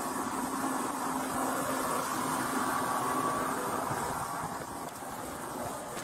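Steady rushing of wind and water with a faint engine hum, picked up by a police body camera on a boat running at speed.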